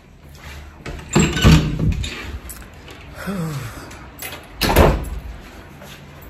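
Two loud knocks or bumps about three seconds apart, the first longer and rougher, with a brief low falling tone between them.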